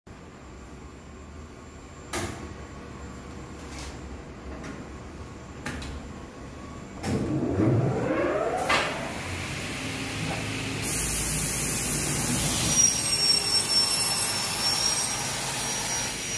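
Semi-automatic 450 mm aluminium cutting saw: a few clicks, then the blade motor starting about seven seconds in with a rising whine and settling into a steady spinning run. In the last few seconds a louder, high-pitched stretch is heard as the blade cuts the aluminium profile.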